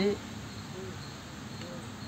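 Pause in a man's speech: steady outdoor background noise with a faint, high, steady whine, perhaps insects. The tail of his word is heard right at the start.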